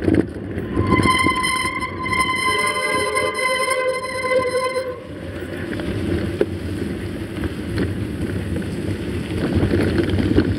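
Mountain bike riding over a forest road, heard as steady wind and tyre rumble on a handlebar-mounted camera. About a second in, a steady high-pitched squeal with overtones starts and holds for about four seconds before stopping.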